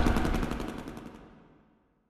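A rapid rattle of sharp repeated hits, more than ten a second, fading out steadily over about a second and a half into silence.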